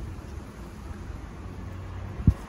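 Steady outdoor background noise, a low rumble with a light hiss.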